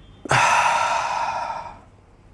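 A man's long, audible breath out as part of a deep-breathing exercise, strong at the start and fading away over about a second and a half.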